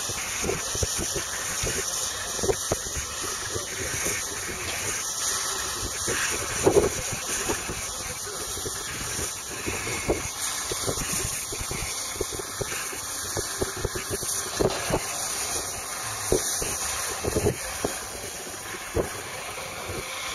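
A John Deere 4430's six-cylinder diesel runs at a distance while it pulls a Vermeer round baler. It sits under a steady hiss and frequent low bumps from wind or handling on the microphone.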